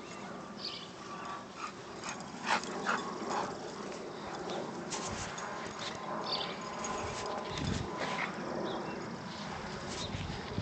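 A dog whimpering and whining in short high sounds, with a thinner held whine through the second half.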